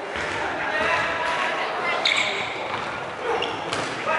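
Dodgeballs thudding on the wooden court floor and off players a couple of times, over a steady din of players' voices calling out, echoing in a large sports hall.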